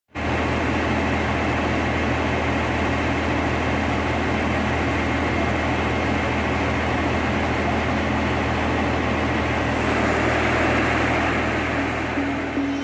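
SANY truck crane's diesel engine running steadily with a low, even hum, growing slightly louder near the end.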